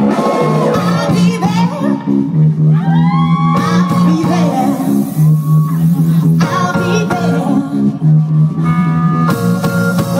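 Live band playing drum and bass on electric guitar, bass guitar, keyboards and drum kit, with a bass line of held low notes that change every second or so.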